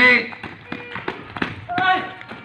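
A basketball being dribbled on an outdoor concrete court, with scattered sharp taps of the ball and sneakers on the concrete. A voice calls out briefly near the end.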